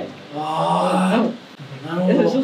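A voice holding one long drawn-out vowel, about a second long, that lifts in pitch at the end.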